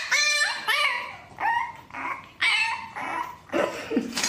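French bulldog puppy yapping: a series of about six short, high-pitched barks, each bending in pitch, roughly one every half second to second.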